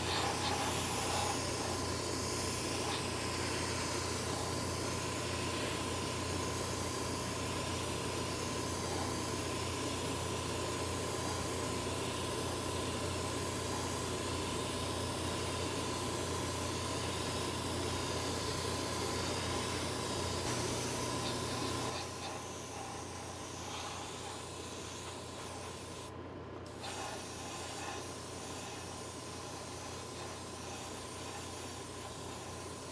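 Airbrush spraying solvent-based paint with a steady hiss over the hum of a spray-area ventilation fan. The hiss drops somewhat about two-thirds of the way through and cuts out briefly near the end while the hum carries on.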